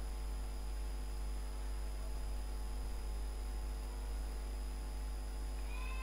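Steady electrical mains hum picked up on the microphone line, with a faint thin high whine over it and no other sound.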